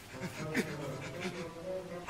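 A quiet voice, with a pitched sound held steady for about a second in the middle.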